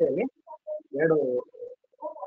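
A man's voice speaking in short, broken phrases with brief pauses between them.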